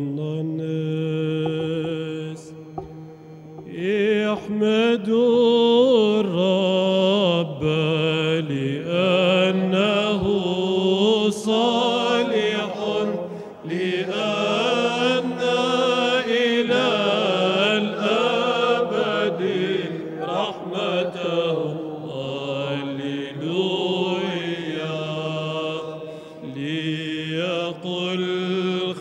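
Byzantine liturgical chant: a melody with vibrato sung over a steady held low drone note (the ison). It thins briefly a few seconds in, then comes back fuller.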